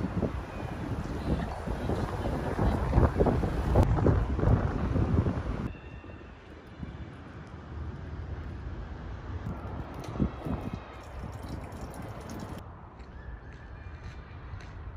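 Wind buffeting the phone's microphone, a rough rumbling noise for the first few seconds. It cuts off suddenly to a much quieter open-air ambience.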